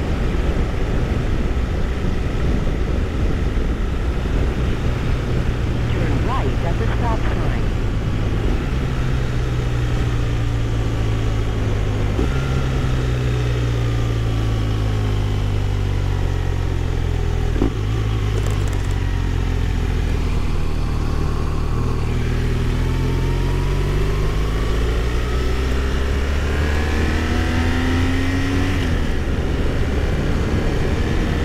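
BMW R1200RS boxer-twin engine running under way, heard from the rider's seat over wind and tyre noise. The engine's pitch shifts in steps a few times, about 9, 12 and 18 seconds in, as the throttle and speed change.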